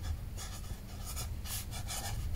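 Black pen writing by hand on a notebook page: a series of short, faint, scratchy pen strokes.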